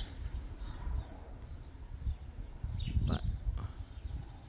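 Wind buffeting the microphone outdoors: an uneven low rumble that rises and falls, with a faint natural background.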